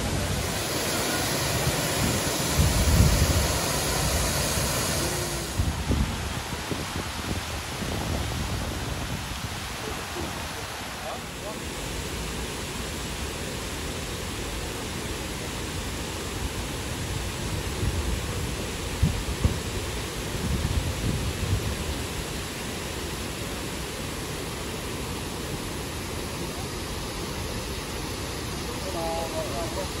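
Fountain jets and cascading water giving a steady rushing hiss, brighter in the first few seconds, with low gusts of wind buffeting the microphone now and then.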